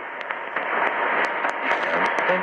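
Shortwave AM reception on 4910 kHz in a gap in the talk: a steady hiss with scattered crackles of static and a faint steady whistle.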